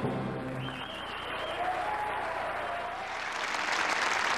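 Live stage music ends in its last held notes, and an audience applauds, the clapping swelling louder toward the end.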